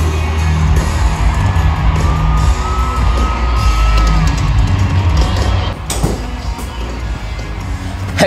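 Live country music played loud through a stadium sound system and recorded from the stands, heavy booming bass, with a crowd yelling and whooping. A single high note is held for about two seconds in the middle, and a sharp bang comes about six seconds in.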